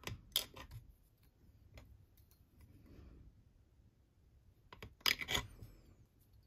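A long straight clay blade pressed down through a sheet of polymer clay, clicking and scraping against the work surface. There are a few sharp clicks at the start, faint scraping after them, and a louder cluster of clicks about five seconds in.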